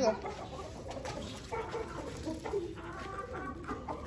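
Chickens clucking in a flock, a few short calls spread through the moment.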